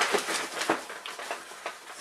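Cardboard and packaging rustling and scraping with small crackles as a hand rummages inside a cardboard box, louder at first and dying down toward the end.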